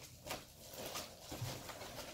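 Faint crinkling and rustling of a plastic packaging bag and cardboard box as a keyboard is lifted out, in short irregular bursts.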